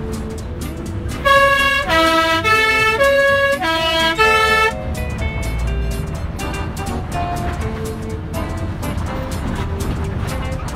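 Swiss PostBus three-tone horn sounding its three-note call twice in a row, starting about a second in and lasting about three and a half seconds, as a warning on a blind bend of a narrow mountain road. Under it, the bus's engine runs with a low rumble.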